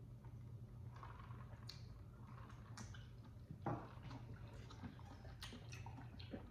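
Faint eating sounds: soft chewing and mouth noises with scattered light clicks, one a little louder just past halfway, over a low steady room hum.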